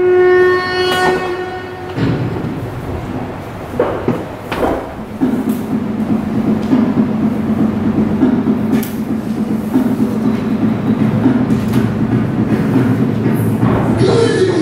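Sound played over the hall's speakers for a mallakhamb pole routine: one long horn-like note held for about two seconds, then a steady, dense rumbling sound.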